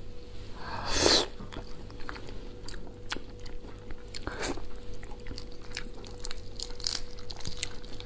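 Hands peeling the shell off a large soy-marinated tiger prawn: many small crackling clicks as the shell and legs are pulled apart, with two louder bursts about a second in and again past four seconds as the prawn is bitten and eaten.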